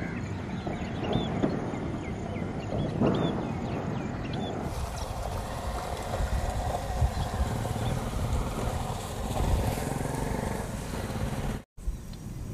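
Outdoor field recording with a steady low rumble. Over it, small birds give short, high, downward-hooked chirps during the first few seconds. About five seconds in, the sound changes suddenly to a broader rushing noise with the rumble beneath.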